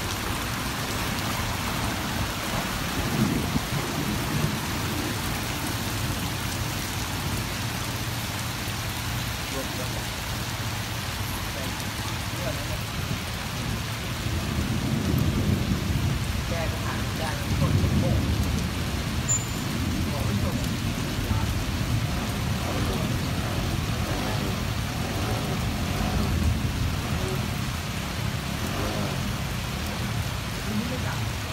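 Heavy rain falling steadily onto flooded pavement. A low rumble swells up about halfway through and fades again.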